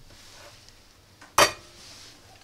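A single sharp metallic clink with a short ring about one and a half seconds in: a soldering iron being set back into its metal coil stand. Soft handling sounds around it.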